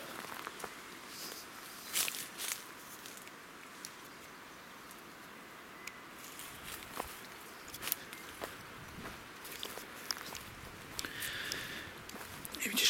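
Faint footsteps on a forest path, with scattered crackles of leaf litter and twigs underfoot, over a steady low hiss.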